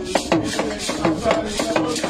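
A hand-beaten drum played in a fast, steady beat, with voices chanting and singing along.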